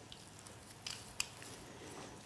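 Faint clicks and light taps of metal dental hand instruments being handled and passed, with the sharpest click about a second in, over quiet room tone.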